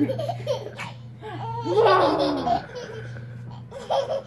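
Laughter with a baby's laugh in it, loudest about two seconds in, over a steady low hum.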